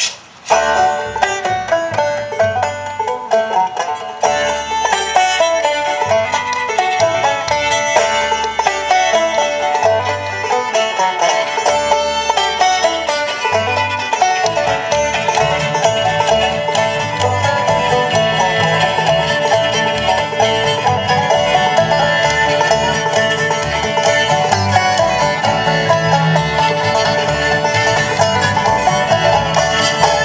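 Old-time string band playing live, led by frailed (clawhammer) banjo with fiddle. The music starts about half a second in, and its low end grows fuller about halfway through.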